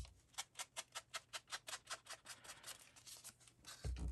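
Ink blending tool with a foam pad being dabbed quickly and repeatedly against paper and the ink pad, about seven faint strokes a second, stopping near the end.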